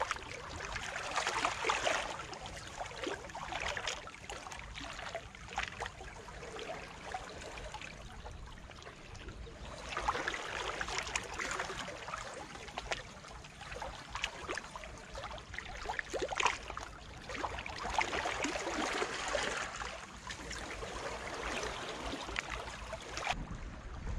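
Small sea waves lapping and trickling among shoreline boulders, swelling and easing every few seconds in a calm sea.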